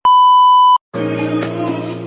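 Colour-bars test-pattern tone: one steady, high beep about three-quarters of a second long that cuts off suddenly. After a short silence, upbeat background music begins.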